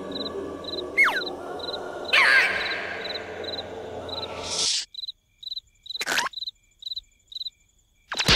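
Crickets chirping steadily, a few short chirps a second, as cartoon night ambience. Over them in the first half an airy whooshing sound effect with falling whistles, and a short swoosh about six seconds in.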